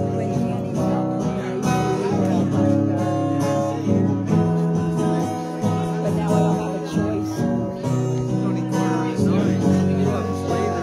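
Acoustic guitar strummed in sustained chords, an instrumental passage with no clear singing.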